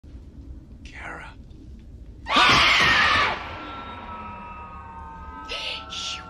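A loud, shrill scream lasting about a second, a little over two seconds in, trailing into a sustained eerie high tone. Brief breathy whispers come before it and again near the end.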